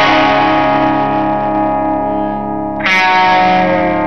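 Live electric guitar through effects, playing sustained chords: one chord rings and fades, and a second is struck about three seconds in.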